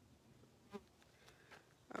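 Near silence: faint outdoor background, broken by one brief faint sound about three-quarters of a second in.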